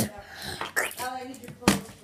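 Children's short muffled vocal sounds, not clear words, with two sharp knocks, one at the very start and one near the end.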